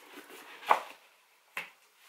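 Hands handling a cardboard gift box: light rustling, a sharp snap a little under a second in and a fainter one about a second later.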